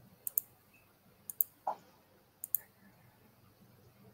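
Computer mouse clicking: three quick pairs of sharp clicks, about a second apart.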